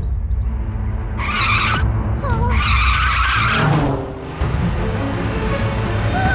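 Cartoon sound effects of a toy car: a low engine rumble with two bursts of tyre screeching, one about a second in and a longer one around three seconds.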